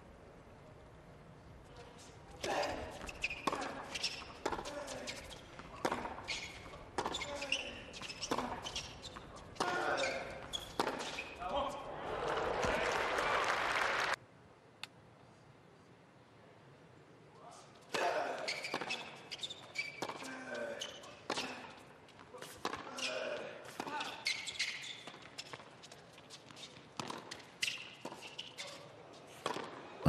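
Tennis rally sounds on a hard court: rackets striking the ball, the ball bouncing, and the players' shoes and efforts, with a quick run of sharp hits. Denser crowd noise builds near the end of the first point, which cuts off suddenly. After a short lull a second rally begins.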